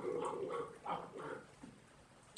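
A man's mouth noises acting out a giant gnawing and crunching a bone: several short vocal bursts in the first second and a half, trailing off near the end.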